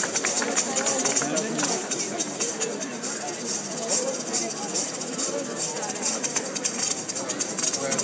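Live band playing over an outdoor festival PA, heard from within the audience, with a quick shaker rhythm and voices over it.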